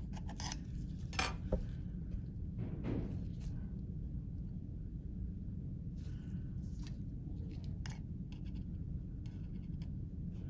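Tweezers clicking and scraping against the metal chassis and vent of an Xbox Series X, in scattered short clicks over a steady low hum.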